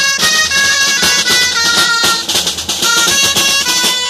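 Several dulzainas playing a traditional melody together, over the steady beat of a drum.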